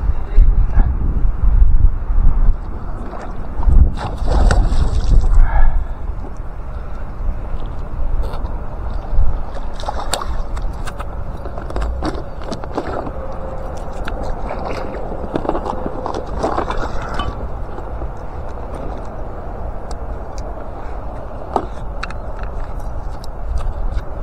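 Water sloshing and gurgling around a float tube, with scattered knocks and clicks from handling gear. It is loudest and most uneven in the first six seconds, then settles into a steadier wash.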